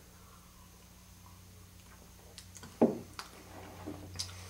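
A man taking a sip of beer from a glass, with a few faint mouth clicks. About three seconds in there is one dull knock as the glass is set down on the wooden table.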